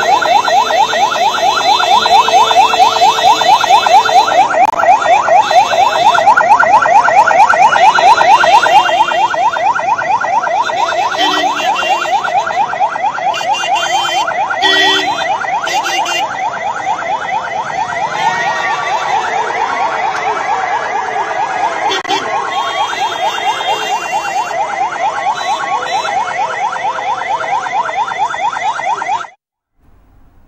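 Police vehicle siren in a fast yelp, a rising sweep repeated several times a second. It is loudest in the first nine seconds, a little quieter after, and cuts off suddenly near the end.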